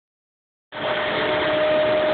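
Truck-mounted concrete pump running steadily, a constant machine drone with a single steady whine, coming in abruptly about two-thirds of a second in.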